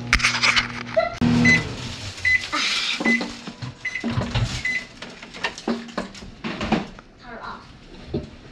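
A microwave oven hums steadily as it runs and stops about a second in. It then beeps five times, a little under a second apart, signalling the end of its heating cycle.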